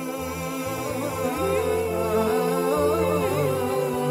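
A voice singing a long, wavering, drawn-out melody with sustained notes over a musical accompaniment with low bass notes.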